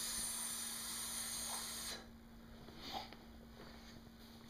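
A person making a long, steady "psssst" hiss through the lips for about two seconds, the cue sound used to prompt a baby held over a toilet to pee. It cuts off sharply about two seconds in.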